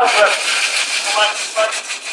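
Short snatches of people talking over a steady background noise, with little low end.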